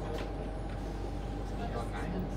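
Steady hum inside a Sydney Trains Tangara carriage, a constant low drone with a fainter steady tone above it, under quiet passenger chatter.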